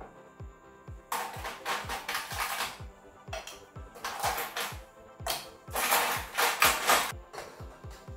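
Ice rattling inside a metal cocktail shaker, shaken in several bursts of a second or two each, over background music with a steady bass beat about four times a second.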